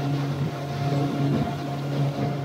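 Motorboat engine running steadily as the boat cruises across open water, a low even drone with wind and water noise over it.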